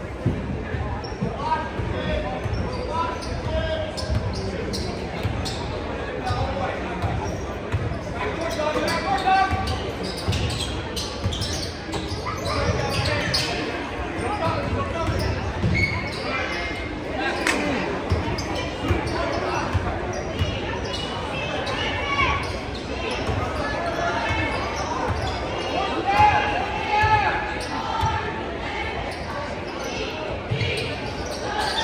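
Basketball game play in a large gym: a basketball bouncing on the hardwood court again and again, with spectators' voices talking around it, all echoing in the hall.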